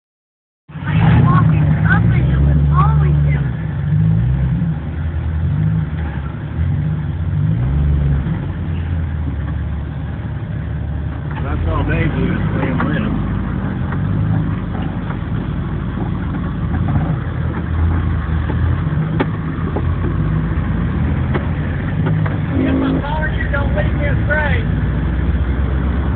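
Low, steady engine rumble of off-road vehicles crawling up a rocky trail, heard from inside the cab of the following vehicle, with indistinct voices now and then.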